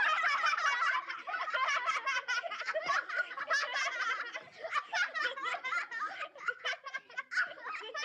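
A group of children's high voices laughing and giggling together, starting abruptly and running on throughout.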